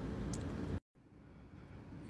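Faint room tone with no distinct sound. It drops to dead silence at an edit just under a second in, then returns very faintly.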